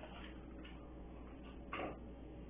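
Whiteboard eraser wiping across a whiteboard in faint, soft strokes, with one louder short scuff near the end.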